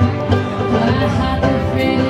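A live band playing country-style music led by guitar, with plucked strings over a steady beat.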